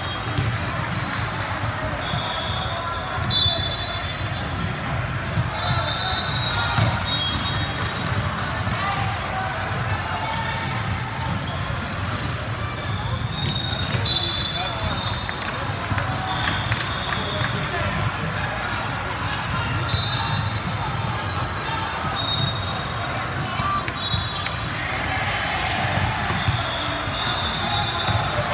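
Busy sports-hall ambience: overlapping voices, balls bouncing and being struck, and short sneaker squeaks on the hardwood floor recurring throughout.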